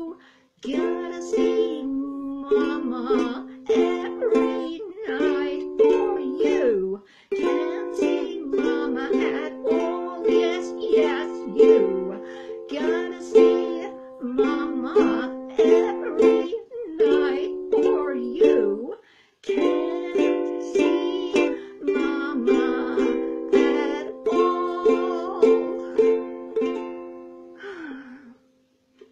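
Ukulele strumming chords in a lively, even rhythm, an instrumental passage without singing. The playing breaks off briefly twice and dies away near the end.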